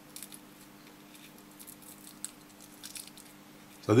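Faint, scattered crinkles and ticks of thin polyester film being handled and peeled apart between the fingers as a dismantled Epcos film capacitor's winding is unrolled, with one sharper tick a little past two seconds.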